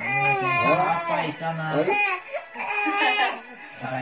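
A baby fussing with cry-like vocal sounds, mixed with adults' voices and laughter.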